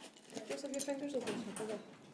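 A person's voice humming a drawn-out 'mm' that holds steady, then falls in pitch, with faint clicks from a hotel key card being handled at the door lock.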